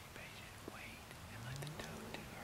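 A man whispering close by, with a few faint clicks.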